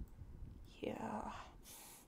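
Speech only: a single voice saying "yeah" about a second in, with a short hiss near the end.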